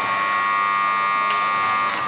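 Ice hockey rink horn sounding one steady, loud blast about two seconds long, cutting off suddenly near the end.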